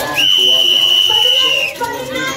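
A whistle blown once: one steady high note about a second and a half long, bending slightly at its start and end, over a crowd's voices.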